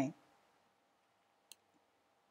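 A single short click about one and a half seconds in, typical of a computer mouse button, against near silence.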